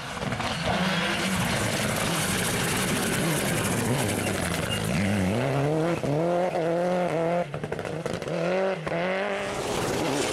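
Mitsubishi Lancer Evolution rally car at full throttle on a gravel stage, with gravel and tyre noise under the engine at first. In the second half the engine pitch climbs and drops back several times in quick succession as it shifts up through the gears.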